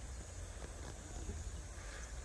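Faint outdoor ambience: insects chirping steadily, with a low rumble underneath.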